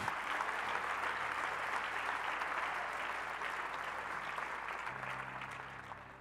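Church congregation applauding, a steady clapping that dies away over the last second or so.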